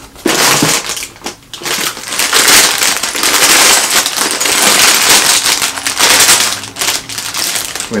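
Plastic Lego polybags crinkling loudly as they are handled and pulled out of a cardboard shipping box, with a short lull about a second and a half in.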